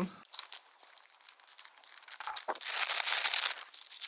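Plastic packaging of a self-heating rice meal crinkling and rustling as it is handled, sparse crackles at first, turning dense and louder in the second half.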